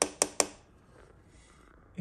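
Two or three sharp clicks in quick succession, about a fifth of a second apart, from a hand handling the scooter's motor controller and its wiring.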